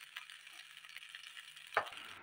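Fried rice being stirred and tossed in a hot pan with a plastic spatula: a faint sizzle with soft scraping ticks, and one sharp knock of the spatula near the end.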